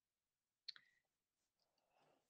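Near silence, broken by one short click less than a second in.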